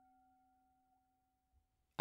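The last faint ring of a meditation bell dying away, a few steady tones fading to near silence shortly before the end. The bell marks the close of a meditation segment.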